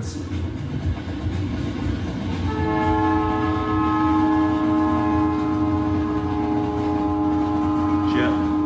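Train running with a low rumble, then about two and a half seconds in a long, steady train horn sounds a chord of several notes and holds to the end.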